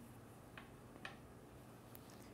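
Faint clicks of wooden knitting needles knocking together as stitches are worked: a few soft ticks, two of them about half a second apart, over near silence.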